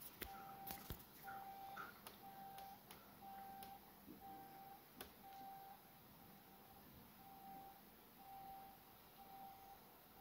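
Faint electronic beep at one steady mid pitch, repeating about once a second, with a few soft clicks among the beeps.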